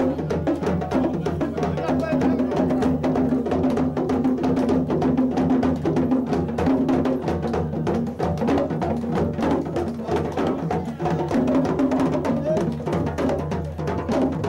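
Live hand-drum music led by a djembe: fast, dense strokes throughout, with a held low pitched note running under the drumming.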